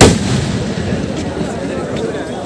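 A single loud firework bang right at the start, its boom dying away over the next second or so.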